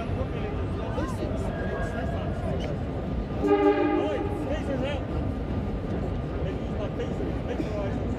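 R32 subway train running through a station with a steady rumble, and a short, steady horn blast about three and a half seconds in, the loudest moment.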